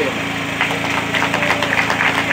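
Steady low mechanical hum, with a faint irregular crackle of small ticks from about half a second in.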